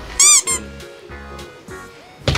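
A high, cartoonish squeak sound effect: two quick squeaks near the start, each rising then falling in pitch. Soft background music with low held notes follows.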